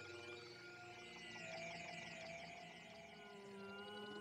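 Quiet live electronic music: layered synthesizer tones held and slowly gliding up and down in pitch, with no drum beat.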